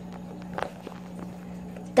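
A few soft knocks and rubs of a phone being handled and repositioned, over a steady low hum.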